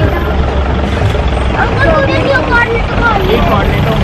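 Steady low rumble of street traffic and vehicle engines, with indistinct voices of people nearby.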